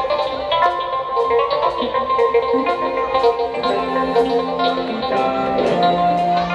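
Live rock band playing an instrumental passage: electric guitars and bass over drums, with cymbal strikes keeping a steady beat.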